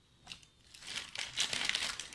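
A wrapper being crinkled by hand, the crackle building through the second half and loudest near the end, after a short tick about a third of a second in.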